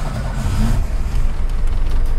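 A 1990s Volkswagen Parati Surf's engine running right after being started remotely from a smartphone app that works the ignition and starter relays.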